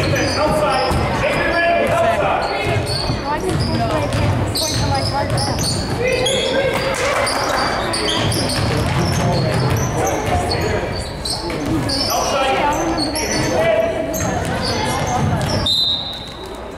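Basketball being dribbled on a hardwood gym floor, with sneakers squeaking and players and spectators calling out, all echoing in the gym.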